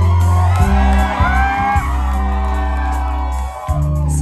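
Live band playing held chords over low bass notes that change about half a second in and again near the end, while the crowd whoops and cheers.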